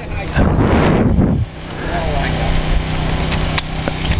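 Racing outboard motor on an OSY 400 hydroplane running during warm-up: a louder, rough burst in the first second and a half, then a steady low, buzzing running note.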